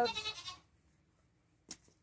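A farm animal bleating, one drawn-out call that ends about half a second in, followed by a single sharp click near the end.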